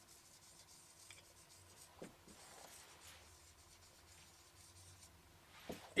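Faint strokes of a marker pen writing on a whiteboard, with a small tap about two seconds in.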